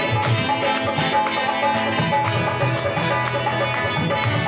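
Live qawwali music: harmonium chords and acoustic guitar, over a fast, steady percussive beat of about four or five ticks a second.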